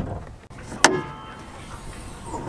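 Hood latch of a 2022 Ram 3500 releasing: one sharp metallic clunk a little under a second in, with a brief ring after it.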